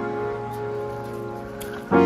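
Background piano music: a held chord fading slowly, then a new chord struck just before the end. Faint light ticks, like crackle or soft rain in the track, sit over it.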